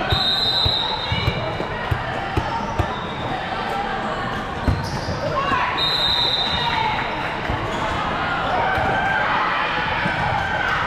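Indoor volleyball game: a referee's whistle sounds twice in short blasts, right at the start and again about six seconds in, over the echoing thuds of volleyballs being bounced and struck and the steady chatter and shouts of players and spectators in a large hall.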